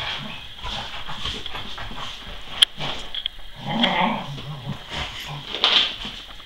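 Cocker spaniel rolling and wriggling on its back on a rug, with scuffling and rubbing noises and a sharp click a little before three seconds in. About four seconds in the dog makes a brief low vocal sound.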